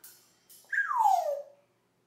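African grey parrot giving one falling whistle that slides from high to low over about a second, after two soft clicks.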